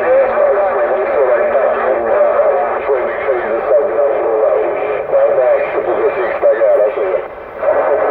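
Voice transmissions coming over a Cobra 148GTL CB radio's speaker, thin and wavering, with a steady whistle tone beneath them. The signal drops out briefly about seven seconds in, then resumes.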